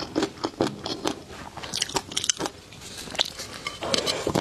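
Close-miked chewing of a mouthful of flying fish roe (tobiko) in sauce: repeated crisp, wet crunching clicks about three a second, with a cluster of brighter crackles midway. Near the end a louder crunch as the next spoonful goes into the mouth.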